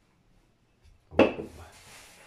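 A wooden rolling pin is set down with a single knock on a wooden pastry board about a second in. Hands then rub and press dough on the floured board.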